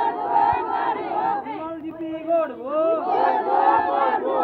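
A crowd of villagers, mostly women, shouting rally slogans together, many voices overlapping. The shout comes in two loud rounds, the second near the end.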